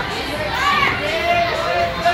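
Children's voices shouting and calling out over a steady background of noise, as at play in a large indoor hall.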